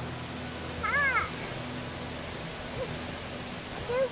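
A young child's short wordless cry, rising then falling in pitch, about a second in, over the steady rush of a stream.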